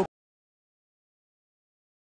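Dead silence: the sound cuts off abruptly just after the start, as a man's speech stops mid-flow, and nothing at all follows.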